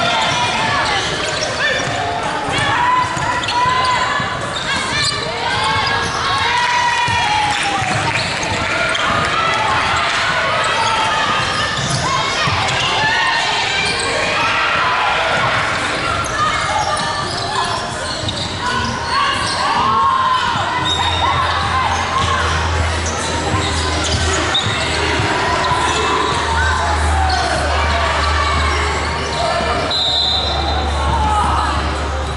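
Live basketball play on a hardwood court echoing in a large hall: the ball bouncing, sneakers squeaking in short sharp chirps, and players calling out to each other.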